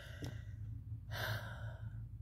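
A woman's audible breath, a sigh-like rush of air lasting just under a second from about halfway through, over a steady low hum.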